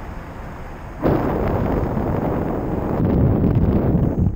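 Wind buffeting the microphone of a GoPro Session camera during paraglider flight. It is a steady rush at first, then turns sharply louder and rougher about a second in.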